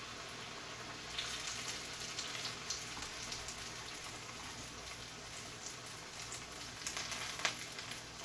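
Battered pieces frying in hot oil in a wok: a steady sizzle with scattered small crackles, and one sharper pop near the end.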